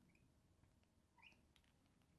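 Near silence: room tone, with a few faint clicks and one faint short squeak of a marker writing on the board about a second in.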